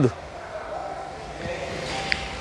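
Steady low background noise of a mechanic's workshop, with no distinct event.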